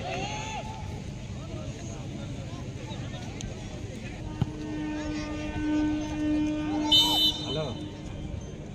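Distant voices and shouts on an outdoor football pitch over a low rumble, with a sharp knock about halfway through and a steady droning tone in the second half.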